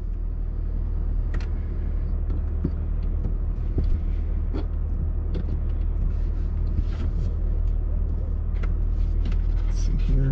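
Toyota GR Supra (MK5) engine idling steadily while the car sits stationary, heard from inside the cabin as a low, even hum, with a few small clicks and knocks from movement in the cabin.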